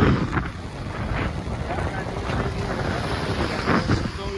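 Wind buffeting the microphone on a moving motorcycle, with the bike's road and engine noise underneath. There are louder gusts about a second in and again near the end.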